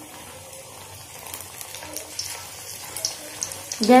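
Gram-flour (besan) batter fritter deep-frying in hot oil in a steel kadhai: a steady sizzling hiss with scattered small crackles.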